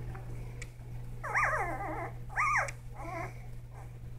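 Newborn Labradoodle–Goldendoodle cross puppy whimpering: two loud, high squeals that rise and fall in pitch about a second apart, then a fainter third one.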